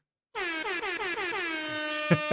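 Air-horn sound effect: one long, many-toned blast that starts about a third of a second in, drops in pitch at first and then holds steady.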